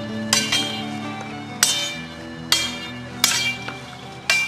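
Swords clashing: about six sharp, ringing metallic clangs at uneven intervals, over background music.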